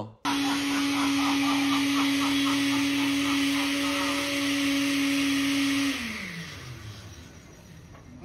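Countertop blender switched on and running steadily with a constant motor hum and whirr. About six seconds in it is switched off and the motor winds down, its pitch falling as it slows to a stop over about a second and a half.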